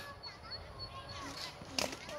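Faint, distant children's voices carrying across open fields, with a brief soft knock near the end.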